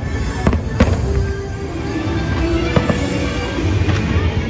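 Fireworks going off over music, with a few sharp bangs about half a second in, just under a second in and near three seconds in.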